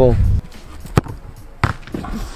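A football kicked: one sharp thud of a boot striking the ball about a second in, then a second thud about half a second later.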